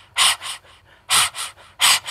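A person breathing hard in short, hissy puffs, in pairs of a strong breath followed by a weaker one, three times over.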